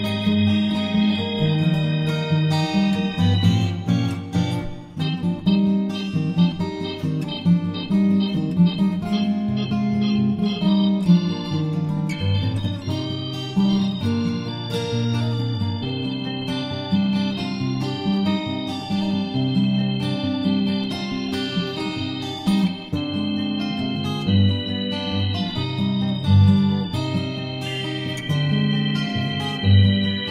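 Instrumental duet of two steel-string acoustic guitars playing interlocking plucked lines over held chords from a Hammond organ.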